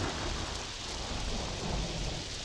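Rain-and-thunder sound effect: a steady hiss of rain over a low rumble of thunder, slowly fading out.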